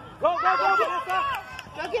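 High-pitched voices shouting, starting about a quarter second in and again near the end.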